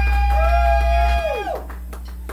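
Amplified live rock band holding sustained electric guitar notes over a low bass drone. The low drone drops away just over a second in, and the guitar notes bend down in pitch and fade out soon after.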